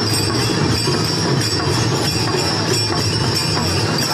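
Small brass hand cymbals (jhanj) clashing without pause in a devotional procession, with a sustained metallic ring over a steady beat of a hand drum.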